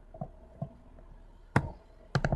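Stylus tapping and writing on a tablet screen: a few soft taps, then a sharper knock about one and a half seconds in.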